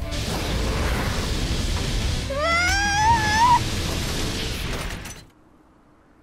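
Animated-film soundtrack: music under a dense, rumbling sound-effect bed. Midway there is a rising, wavering whine lasting about a second. The sound drops away suddenly near the end to a very quiet stretch.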